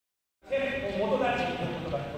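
Speech: a person talking, starting about half a second in after a brief silence.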